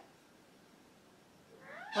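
Quiet room tone, then near the end a short high cry rising in pitch, like a cat's meow.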